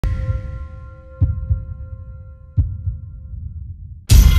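Logo-intro sound design: a ringing synthesized chord struck at the start and fading slowly over a low rumble, with deep thuds like a heartbeat, two close together a little over a second in and one more past halfway.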